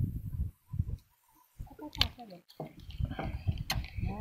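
Dull bumps and rubbing from a handheld phone being handled and covered, with two sharp clicks and brief low voices.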